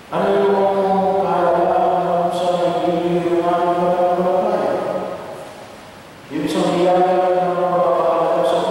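A man's voice singing slow, chant-like phrases of long held notes into a handheld microphone, amplified over the church sound system. One phrase runs about five seconds, then after a short gap a second phrase begins at about six and a half seconds.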